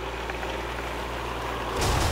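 A boat's engine gives a steady low rumble. A sudden rushing noise breaks in near the end.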